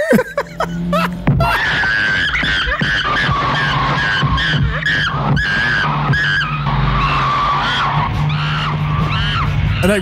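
Movie soundtrack of a car running and skidding while a chimpanzee clinging to it screeches, with music underneath. The car swerves hard and the chimp is flung off onto the road.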